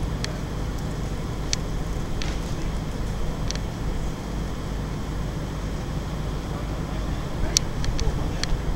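Steady low outdoor rumble, with five short sharp clicks scattered through it.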